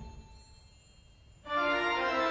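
Church organ: a held chord releases at the start and its sound dies away in the room, leaving near quiet for about a second and a half, then a new full, loud chord enters sharply.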